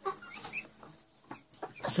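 Broody hen giving a few short clucks, mostly in the first half second, with scattered rustles of straw as she settles onto the eggs in her nest.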